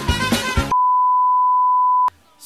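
Background music cuts off abruptly about a third of the way in and gives way to a loud, steady, single-pitch test-tone beep, the tone that goes with TV colour bars.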